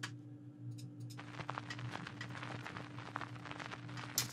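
Vinyl record static sample playing back: a dense crackle of clicks and pops over a low steady hum, sparse at first and thickening about a second in.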